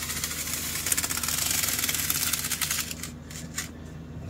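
A small hand-held blade scraping and slicing along the plastic stretch wrap on a cardboard box: a rapid, scratchy rasp for about three seconds, then a few scattered clicks.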